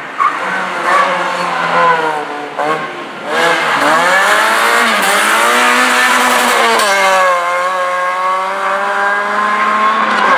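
Opel Astra GSi rally car engine working through a corner. It drops in pitch through downshifts in the first three seconds, then accelerates hard with the note climbing, with upshifts about five and seven seconds in, and ends on a steady high note. The tyres squeal as the car slides round the turn.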